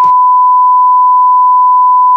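Television test-card tone: a loud, continuous beep held at one steady pitch. It is the off-air 'please stand by' signal.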